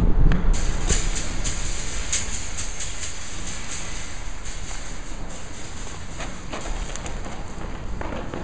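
Irregular footsteps on gravelly dirt, about two a second, over a low rumbling background with music that fades gradually.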